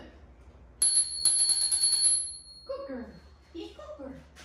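A small bell-like metallic ring, struck twice in quick succession about a second in, ringing on a high steady tone that fades out over about a second and a half.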